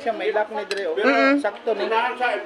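Light metal clinks of thin metal canopy-frame tubes knocking together as they are handled and fitted, one sharp clink just under a second in.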